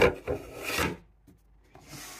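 A bamboo basket lid is knocked and then scraped and slid against a wooden shelf. There is a sharp knock, then about a second of rough rubbing strokes.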